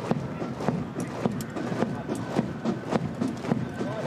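A body of Foot Guards marching in step on a paved road, their boots striking together in a regular beat a little under two steps a second.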